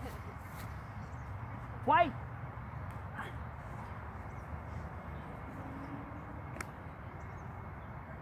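Steady outdoor background noise, with a man's one-word shout about two seconds in and a single faint click near the end.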